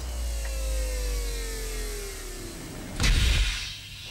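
Television programme logo sting: a deep rumble under a falling whoosh of several descending tones lasting about two and a half seconds, then a loud hit about three seconds in.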